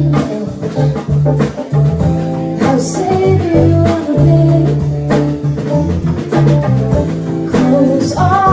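Live band playing: electric bass guitar holding low notes, a Korg keyboard and a drum kit keeping the beat, with a woman singing over it at times.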